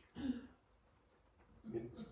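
A man clearing his throat once, briefly, just after the start, then quiet room tone. A short bit of voice returns near the end.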